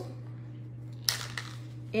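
A small plastic toothbrush-refill package handled in the hands, giving one sharp click about a second in and a fainter one just after, over a steady low hum.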